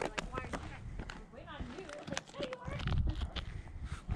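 Short scuffs, taps and scrapes of hands and hiking shoes on granite as two people climb over the boulders, with faint voices in the background.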